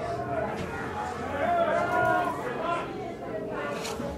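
Indistinct chatter of people talking, their words not clear.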